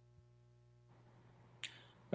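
Near silence: a faint low electrical hum, with one short click about a second and a half in.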